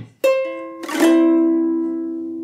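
A C major chord played on a ukulele. Its strings come in one after another over about the first second, then ring on and slowly fade.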